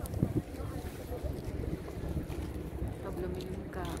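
Wind rumbling steadily on the microphone, with brief voices near the end.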